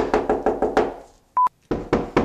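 Repeated knocking on a door, quick strokes at first and then separate knocks near the end, with one short, steady high-pitched beep about one and a half seconds in.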